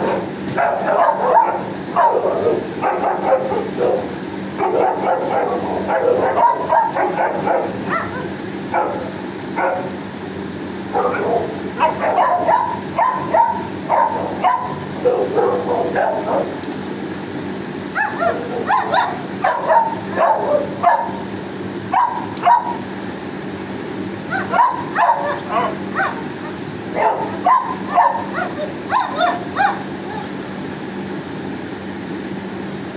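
Dogs in shelter kennels barking and yipping in repeated clusters of short barks, over a steady low hum.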